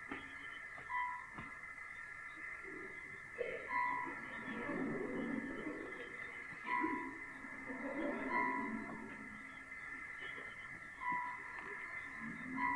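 Electronic stage sound effect of a machine: several steady high tones hum together, with a short beep every one to three seconds and faint, indistinct murmuring underneath, like a distant voice over a radio.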